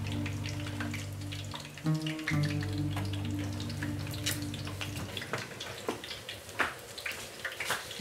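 Chicken sizzling as it fries in oil in a pan, with light clicks and scrapes as it is turned with a wooden spoon, under soft sustained background music that fades out about five seconds in.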